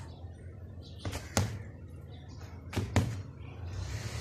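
Bare-fist punches landing on a homemade punching bag, dull thuds in two quick pairs about a second and a half apart.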